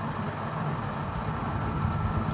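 Steady low background rumble with hiss and a faint steady high tone, with no distinct events.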